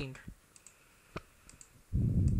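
Computer mouse button clicking several times on page links, a few light clicks with one sharper click about a second in.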